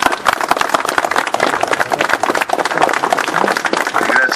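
Small crowd applauding, a dense, continuous run of hand claps.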